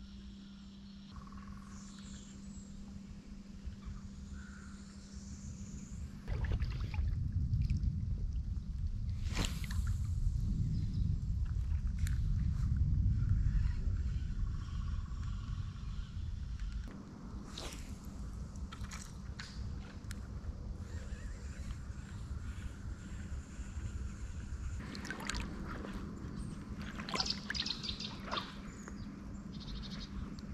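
River water sloshing and trickling around a wading angler's legs, with a steady low hum throughout. A loud low rumble runs for about ten seconds in the middle, and a few short splashy bursts come near the middle and toward the end.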